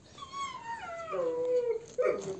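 Georgian shepherd dog (nagazi) giving one long whine that falls steadily in pitch over about a second and a half.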